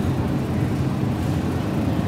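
Steady low rumble of mechanical background noise, with no distinct events.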